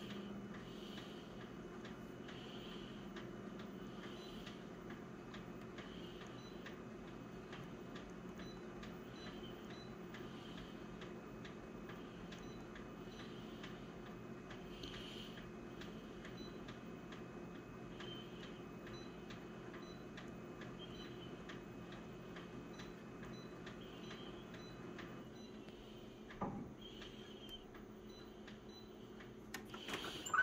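Low steady hum of an office copier idling, with faint regular ticking throughout. About five seconds before the end part of the hum cuts out, and a single knock follows a second later.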